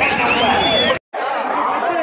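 Large crowd of people talking and shouting over one another. About halfway through, the sound cuts out for an instant and comes back as another crowd with a duller sound.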